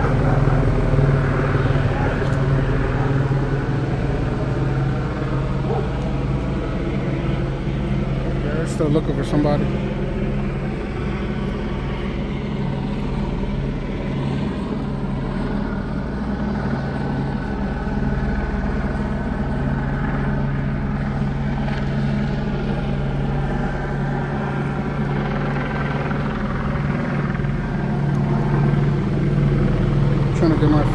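Police helicopter hovering overhead: a steady, low rotor drone that does not change.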